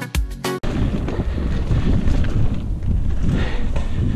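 Background music cuts off abruptly about half a second in. It gives way to loud wind buffeting the camera microphone, with the rumble and rattle of a Giant Talon mountain bike rolling fast over a leaf-covered dirt trail.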